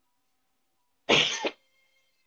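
One short cough from a person, about a second in.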